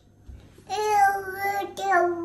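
A toddler's voice: a long, steady, sing-song vowel held for about a second, starting under a second in, with a second vocal sound beginning just before the end.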